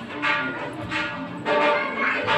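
Brass temple bells struck over and over, about two strikes a second, their ringing tones overlapping.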